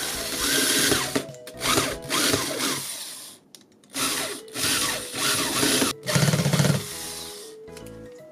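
Corded electric drill/driver running in about five short bursts, driving small screws through perforated metal strapping into a hardboard base, with the bit slipping on the screw heads toward the end.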